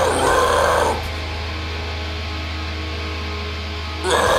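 Deathcore song playing, with a harsh screamed vocal for about the first second. The voice then stops and the track carries on with sustained, steady tones over a constant low bass.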